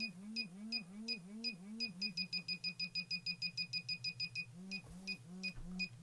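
KKmoon pinpoint metal detector beeping as it detects a gold ring held near its tip. The high beeps come about three a second, quicken to about eight a second, slow down, then quicken again near the end, each with a low buzz beneath it.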